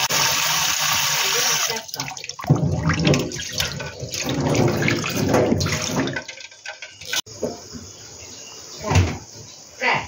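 Water from a kitchen tap running into a steel bowl of eggs in the sink. It is a steady hiss for the first couple of seconds, then uneven splashing as a hand rubs the eggs. After about seven seconds it is much quieter, with a few short knocks near the end.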